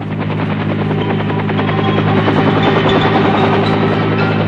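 Bell UH-1 'Huey' medevac helicopter running, its rotor beating steadily as it grows louder over the first couple of seconds.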